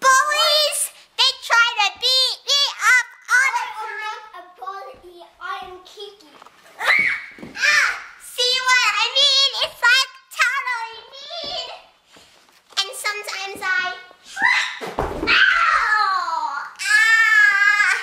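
A young girl singing her own song in a high, half-spoken voice. About 15 s in, a thud as she falls to the floor, followed by a long yell that slides down in pitch.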